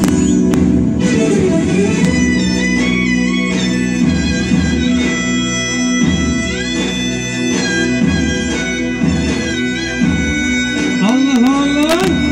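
Turkish folk music accompanying a zeybek dance: a reedy wind melody with ornamented turns over a steady low drone, with plucked strings.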